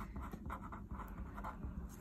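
A pen writing the word "EFFICACY" on paper: a quick run of short, faint scratching strokes, one for each letter stroke.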